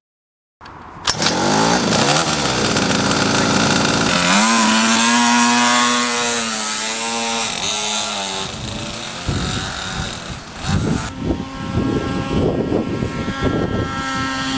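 Twin-engined mini moto running hard as it is ridden, its engine note wavering up and down with the throttle. The sound starts suddenly about half a second in.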